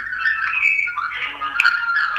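Garbled telephone-line audio from a call-in caller, heard over the studio sound: thin, squawky fragments with steady high whistling tones and a click near the end, the sign of a poor phone connection.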